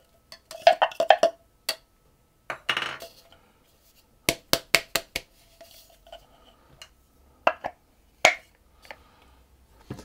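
Utensil tapping and scraping against bowls as ground pistachios are emptied from the small bowl of an immersion blender into a mixing bowl: scattered sharp taps and clinks, with a quick run of four or five knocks about four to five seconds in.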